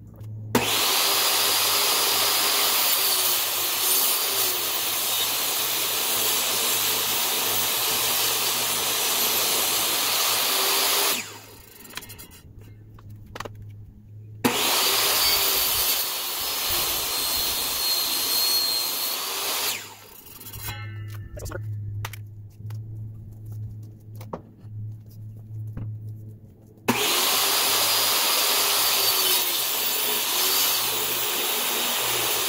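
DeWalt jobsite table saw running and ripping a treated pine deck board, taking a blade's width off the edge. There are three long runs of cutting, the first about ten seconds, the second about five and the last starting near the end, with quieter gaps between them.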